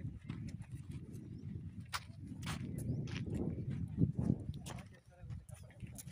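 Footsteps on sandy, stony ground, an irregular run of crunches and clicks, over a low wind rumble on the phone's microphone.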